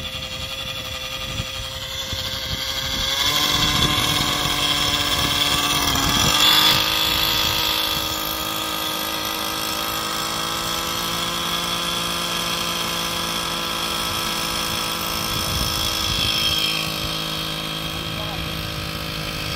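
SAB Goblin Raw 700 Nitro RC helicopter's two-stroke nitro glow engine running, rising in pitch in two steps, about three and six seconds in, as the rotor spools up, then running steadily at speed.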